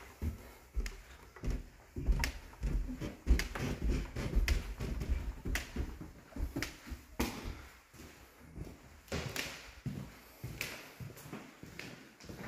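Footsteps going down carpeted stairs and across a laminate floor: a run of irregular low thuds and sharp clicks, about one or two a second.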